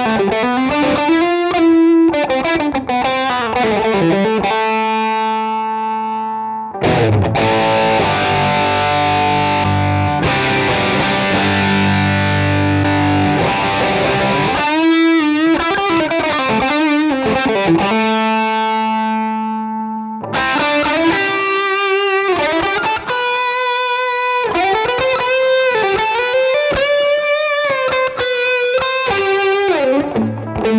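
Ibanez electric guitar played through an amp's middle-gain drive channel, its mids boosted by a Boss EQ-200 pedal in front of the amp to push the amp harder. Overdriven lead phrases with string bends alternate with long held chords that ring out with the amp's reverb.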